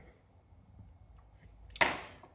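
Quiet room, then near the end one short, loud rustling bump as the recording phone or camera is handled and set to face the table.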